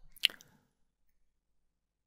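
A single short, wet mouth click, a lip smack from the narrator, about a quarter second in.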